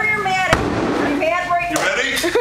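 A single sledgehammer blow, a sharp crack about half a second in, with a brief rattle of debris after it; people shout and laugh around it.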